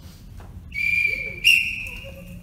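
A referee's whistle blown in two joined blasts: the first steady, the second higher and louder. It is the signal for the examining judges to raise their score cards.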